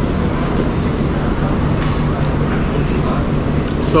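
Steady low mechanical rumble with a constant hum, like an engine running nearby, under open-air ambient noise.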